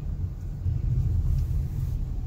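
Low, steady rumble of a car's engine and tyres heard from inside the cabin while it drives slowly along a street.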